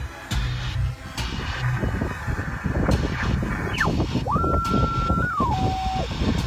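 Yaesu FT-891 HF transceiver's speaker as the dial is turned across the 20 m band: band noise and garbled sideband signals, with a heterodyne whistle that sweeps down, holds steady, then steps lower in pitch as the tuning passes a carrier.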